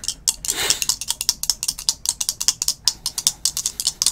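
A pair of dice rattling in cupped hands as they are shaken continuously: a quick, steady clatter of clicks.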